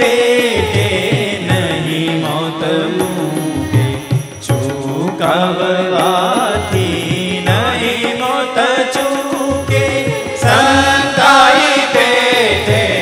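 A devotional song (bhajan) sung by a male lead voice, accompanied by keyboard, violin and tabla, with the audience clapping along.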